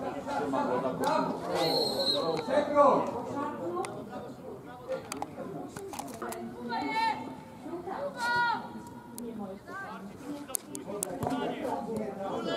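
Indistinct voices of players and spectators calling out at a youth football match, with two higher-pitched raised calls in the second half and a few sharp taps.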